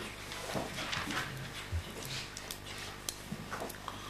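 Quiet courtroom room noise: faint rustling and light scattered knocks over a low steady hum.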